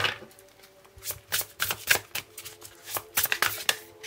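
A deck of oracle cards being shuffled by hand: a quick, irregular run of crisp card flicks and riffles from about a second in until near the end.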